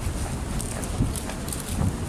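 Footsteps walking on a hard tiled floor: a few dull steps with light clicks between them.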